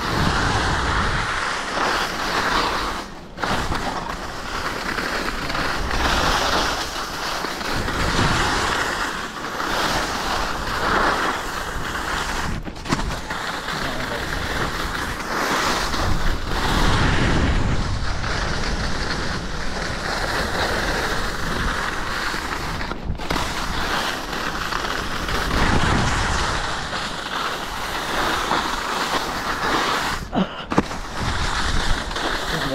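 Skis sliding and carving on packed snow, a continuous scraping hiss that swells and fades as the skier turns, mixed with wind rushing over the microphone; the sound breaks off for a split second three times.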